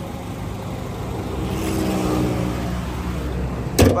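Honda Civic's 1.8-litre i-VTEC four-cylinder engine idling steadily with the bonnet open. A single loud thud near the end is the bonnet being shut.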